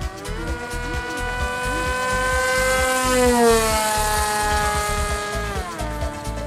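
Whine of an RC flying wing's electric motor and pusher propeller on a high-speed pass. The pitch rises about half a second in, holds steady, then drops sharply near the end as the wing goes by, a Doppler shift at about 87 mph.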